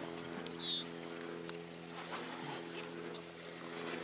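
Steady, even drone of an engine running at constant speed some way off, with a few faint high clicks.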